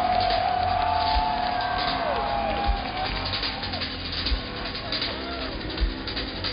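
Live rock band heard loud through the festival PA from within the crowd: a long held note for about the first three seconds, with deep thumps under it and crowd voices and whoops mixed in.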